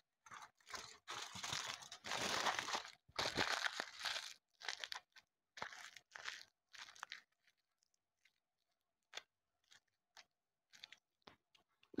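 Aluminium foil being crumpled and pressed by hand into a compact core for a clay figure, crinkling in short irregular bursts for about seven seconds, then only a few faint ticks.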